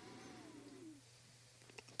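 Near silence: faint room tone with a steady low hum, and a faint brief gliding sound in the first second.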